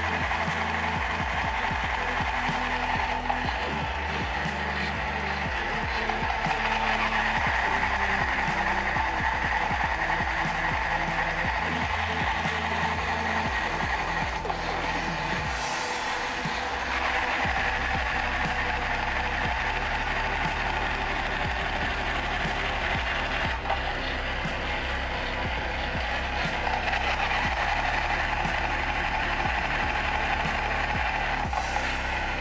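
Ha Ha Toys Thunder Robot, a battery-operated tin toy robot, with its motor and gears running in a steady mechanical ratcheting clatter as it walks, over background music. There is a shift in the sound about halfway through.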